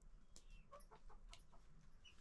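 Faint, short clucks of domestic chickens, scattered through a quiet room, with a few soft pats from hands shaping dough.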